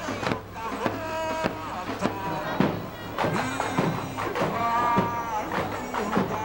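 Samba school bateria playing live in the street: metal-shelled surdo bass drums beat about twice a second under a dense layer of smaller percussion, with voices singing a samba melody over the top.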